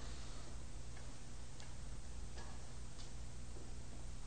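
A pause in speech: a steady low hum and hiss, with about five faint, irregular clicks.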